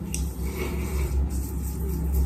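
Faint rubbing of fingertips massaging a facial exfoliating scrub over the skin, over a steady low hum.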